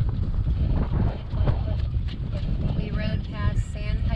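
Gusty wind buffeting the microphone aboard a sailboat under sail, a steady low rumble throughout. A person's voice comes in briefly near the end.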